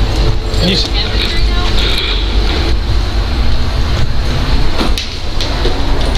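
Steady low rumble and rustle from a body-worn camera's microphone as the wearer walks, with faint voices under it.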